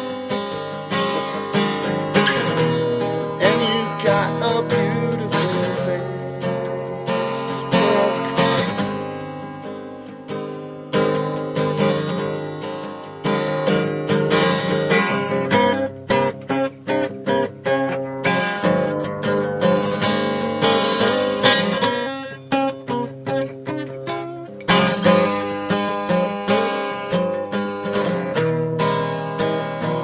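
Acoustic guitar music, strummed and plucked, in an instrumental stretch of a song.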